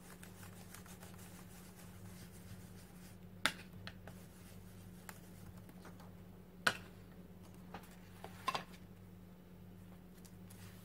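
Quiet handling of art supplies on a desk: a handful of short, sharp clicks and taps as a blending brush and stencil are picked up and set down, the loudest about two-thirds of the way through, over a low steady hum.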